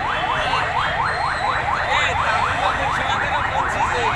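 Emergency-vehicle siren in fast yelp mode: a rising wail repeated about five times a second.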